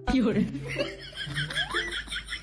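A person chuckling and laughing in short bursts over a steady low rumble of street traffic.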